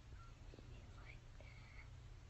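Near silence: a low steady room hum, with faint soft voice sounds like a whisper about a second in.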